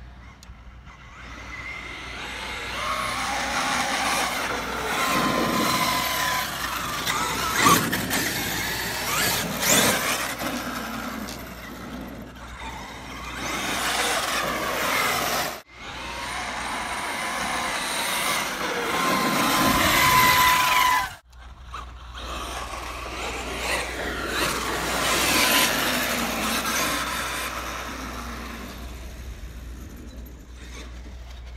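Traxxas X-Maxx monster truck running on asphalt, driven by a 4985 1650kv brushless motor on a Hobbywing Max 6 ESC. Its motor and gear whine rises and falls with the throttle, and the drivetrain and tyre noise swells and fades as it speeds toward and away. The sound cuts out sharply for an instant twice, about halfway and two-thirds of the way through.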